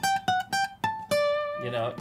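Guild OM-150CE acoustic guitar (solid Sitka spruce top, rosewood back and sides) played high on the neck above the 12th fret: a quick run of high single plucked notes, the last one lower and left ringing.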